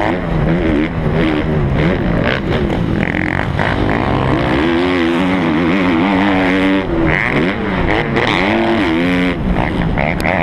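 Motocross bike engine heard from the rider's helmet camera, revving up and falling away over and over as the throttle is opened and chopped around the track, with wind rushing over the microphone.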